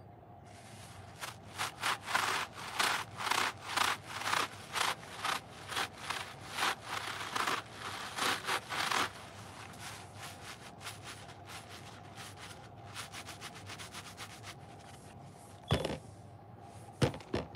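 Two round yellow sponges rubbed and squeezed together in rubber-gloved hands: a quick series of scratchy rubbing strokes, about two or three a second, that then fades to softer scrubbing. A sharp knock near the end as a sponge is dropped into the plastic tub.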